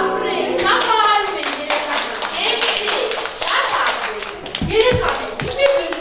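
Small children clapping their hands in an uneven round of applause, with voices over it.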